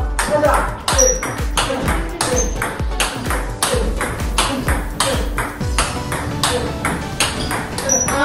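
Table tennis ball struck back and forth in a fast forehand topspin drive rally: sharp clicks of ball on paddle and table, several a second. Background music with a beat and singing runs underneath, its bass dropping out about three-quarters of the way through.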